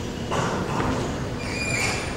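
Rustling and handling noise from a clip-on microphone being adjusted on a jacket, with brief high-pitched tones near the end.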